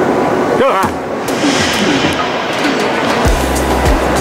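Background music mixed with people's voices; one voice slides up and down in pitch about a second in.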